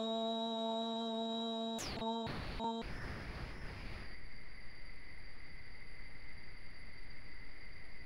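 A woman's long held 'Aum' chant on one steady pitch, fading and breaking up and cutting off about two to three seconds in. After it comes low hiss with a faint steady high whine.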